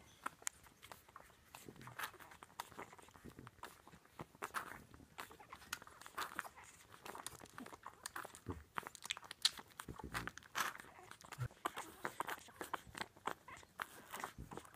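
Two-week-old French bulldog puppies suckling at their mother's teats: a run of quick, irregular wet smacking and clicking sounds.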